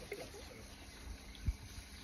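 Quiet background with a faint low, even rumble and a single soft, low thump about one and a half seconds in.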